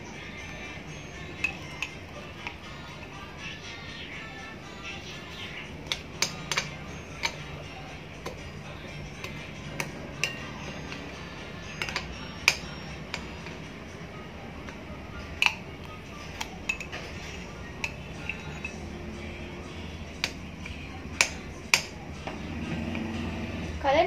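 A metal spoon clinking and scraping against a glass jar and a glass bowl while scooping out soft crushed-cookie mash, with sharp, irregular clinks every second or so.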